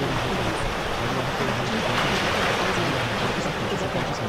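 A steady rushing noise, swelling slightly about two seconds in, laid over faint sped-up spoken affirmations that murmur underneath, layered so they are hard to make out.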